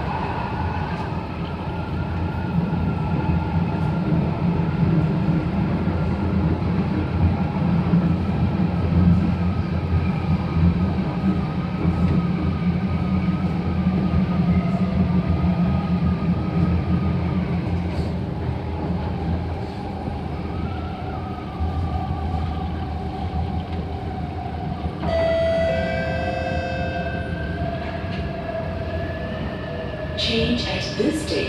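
Inside a Kawasaki-built SMRT C751B metro train running on the track: a loud rumble of wheels on rail, with the electric traction motors' whine slowly falling in pitch as the train slows. About five seconds before the end, as it brakes into a station, the whine changes to a new set of higher pitched tones.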